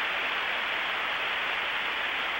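Large arena crowd applauding steadily after a perfect-10 score.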